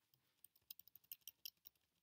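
Faint, quick run of computer keyboard key clicks, about a dozen in just over a second, while the volume is being adjusted.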